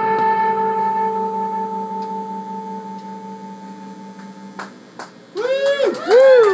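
An electric guitar's last chord left to ring out through the amplifier, a steady sustained tone that slowly fades away. Near the end come two sharp clicks, then a voice calls out.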